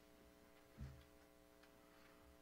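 Near silence: room tone with a faint steady hum, a few faint clicks and one soft low thump just under a second in.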